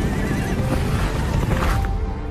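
Horses galloping and neighing over dramatic trailer music. The hoofbeats and neighs cut off abruptly near the end, leaving the music.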